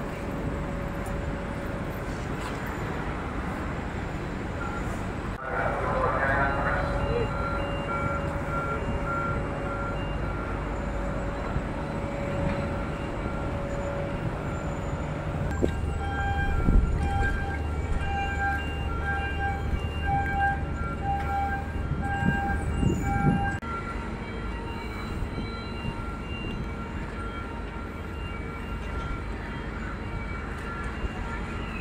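Ambient noise on the quay beside a large berthed passenger ship: a steady din of machinery and faint voices. Through much of the middle an electronic beep pulses at an even rate in two pitched tones, with a low hum under it for several seconds past the midpoint.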